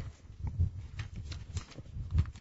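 Bible pages being turned: a soft, faint rustling and crackling of paper with a few light taps.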